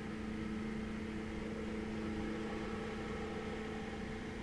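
Steady room noise: a constant low hum with a few fixed tones over an even hiss, unchanging throughout.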